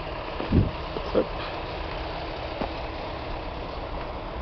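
Steady low engine rumble of earthmoving machinery working on the site, with two short thumps about half a second and a second in.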